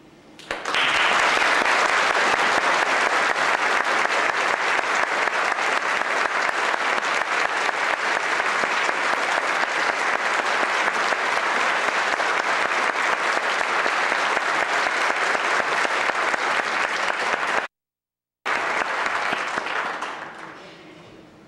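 Concert audience applauding: dense, steady clapping that starts about half a second in. Near the end it cuts out abruptly for under a second, then resumes and fades.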